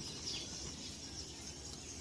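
Faint, steady background noise with an even high-pitched drone and a few faint chirps, like insects and birds outside.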